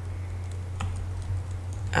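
A few light keystrokes on a computer keyboard, typing a search term, over a steady low electrical hum.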